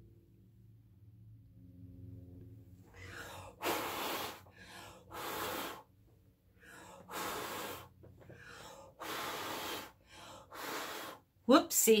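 A run of short puffs of breath blown out through the mouth onto wet fluid acrylic paint, starting about three seconds in and repeating roughly once a second. The breath pushes a thick poured line of paint outward into bloom shapes.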